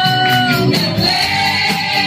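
Live gospel praise-and-worship song: a woman leads the singing on a microphone, with the congregation singing along over band accompaniment with a steady beat. A held note ends about two-thirds of a second in and a new one begins.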